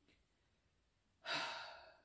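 A person's single audible sigh starting about a second in and fading away within a second, with near silence before it.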